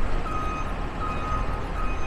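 Repeating electronic beeper sounding a steady high beep about every three-quarters of a second, over a low rumble of street traffic.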